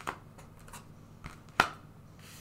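Tarot cards being handled and set down on the table: a few light taps and slides, with one sharper tap near the end.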